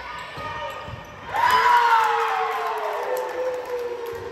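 A couple of ball hits during a volleyball rally, then about a second and a half in a loud, high-pitched cheer breaks out and slides slowly down in pitch for over two seconds as the point is won.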